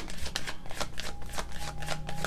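A deck of oracle cards being shuffled by hand: a run of quick, irregular card slaps and clicks, several a second.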